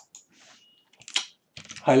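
Computer keyboard keystrokes: a few light key clicks scattered through the first second and a half, as the code in the editor is selected.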